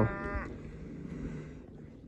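A cow mooing in the distance, one call fading out in the first half-second. The herd sounds a little aggravated at having to dig through the snow for its grass.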